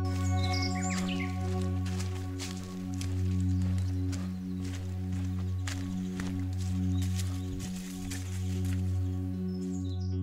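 Calm ambient synthesizer music with steady sustained tones. Under it is outdoor sound from the trail: light footsteps, and brief high bird calls in the first second and again near the end.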